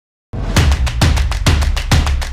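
Intro music with a driving drum-kit beat, kick drum and snare, starting abruptly about a third of a second in after silence, with a heavy kick about twice a second.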